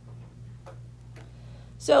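A low, steady hum with a few faint clicks, then a woman's voice begins speaking near the end.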